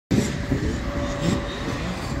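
Two-stroke 65cc motocross bikes racing at a distance, their engine pitch rising and falling as they rev through the track, over open-air noise.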